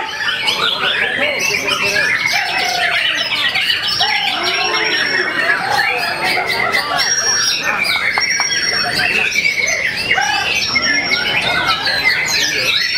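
Many caged white-rumped shamas (murai batu) singing against each other in contest, a dense, unbroken mix of overlapping loud whistles, rapid chirps and trills.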